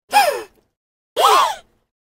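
A person's voice making two short wordless sounds about a second apart, like sighs: the first falls in pitch, the second rises and then falls.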